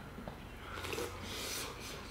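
A man drinking beer from a can: soft sipping and swallowing, with a breathy rush through the nose in the second half.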